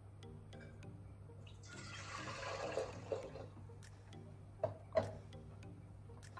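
Two cups of warm water poured from a plastic jug into a stainless steel mixer bowl: a splashing pour lasting about a second and a half, followed a little later by two knocks. Faint background music plays under it.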